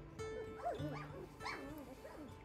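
Three-week-old golden retriever puppies whimpering and yipping: several short, high whines that rise and fall, over a background song.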